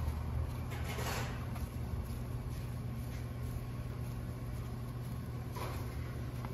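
Steady low mechanical hum, with two brief faint hisses, about a second in and near the end, as the nut on the high-pressure fuel pump's feed line is cracked open to let out fuel pressure.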